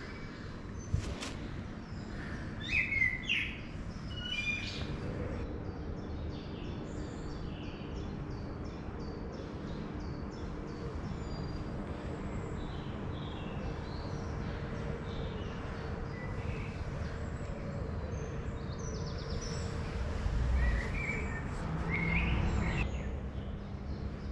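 Songbirds singing in woodland: a scatter of high chirps and short phrases, louder about three seconds in and again near the end, over a faint steady low hum.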